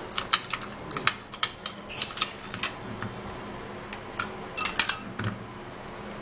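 Metal spoon stirring sugar into aloe vera gel in a small glass bowl, clinking and scraping against the glass in quick, irregular taps, with a lull about three seconds in.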